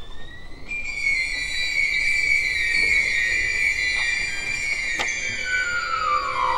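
Violin playing high in its range with slow sliding pitch: a rise within the first second, then a loud held high note that sinks slowly, and a long downward glissando starting near the end.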